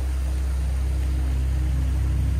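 A small woodland stream running steadily over rocks, under a steady low hum.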